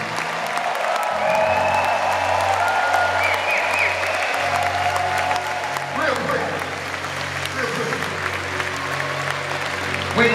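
Concert crowd applauding while the band holds a low sustained note, with short bits of voice through the PA.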